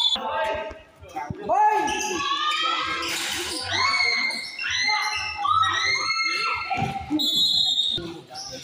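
Sounds of a basketball game in play on a covered court: a string of high-pitched, sliding squeals and shouts overlapping one another, with a ball bounce among them.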